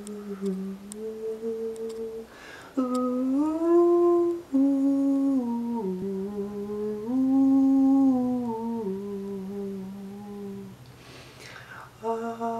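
A man humming a slow wordless tune, holding long notes that slide between pitches, with pauses for breath about three seconds in and near the end. A few faint clicks come in the first second.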